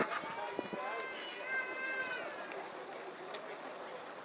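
Footsteps of a large crowd of runners on a wet road, with spectators' voices; about a second in, one voice calls out a long, high held note lasting about a second and a half.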